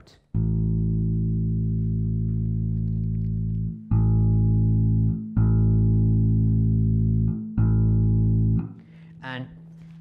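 Open A string of a bass guitar played through a Laney RB3 bass combo amp, plucked four times and left to ring between plucks. The amp's middle control is being turned up for clarity, and the note sounds brighter from about four seconds in.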